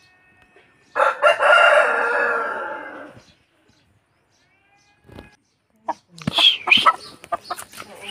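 Aseel rooster crowing: one long crow starting about a second in and fading over about two seconds, with fainter crows before and after it. Shorter, sharper calls follow near the end.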